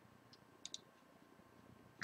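Near silence broken by a few faint computer-mouse clicks: one about a third of a second in, then a quick pair just after.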